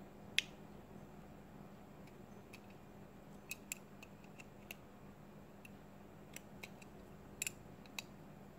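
Small sharp clicks and ticks of steel needle-nose pliers working the metal contact of a plastic wall light switch, scattered irregularly, the loudest about half a second in and a quick cluster around the middle.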